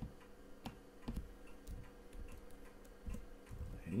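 A handful of scattered, separate clicks from a computer keyboard and mouse as a short number is typed into a field, over a faint steady hum.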